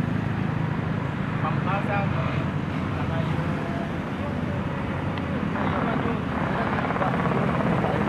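Hand tractor's engine running steadily with a low drone as it works a muddy field, with faint voices now and then.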